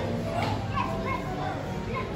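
Background voices of people talking nearby, with children's higher voices calling out over a low steady hum.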